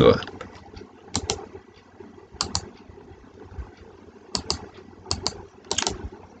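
Computer mouse buttons clicking in quick pairs, five times, with faint hiss between the clicks.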